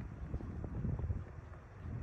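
Wind buffeting the microphone: a low, uneven rumble that swells and fades, dipping slightly near the end.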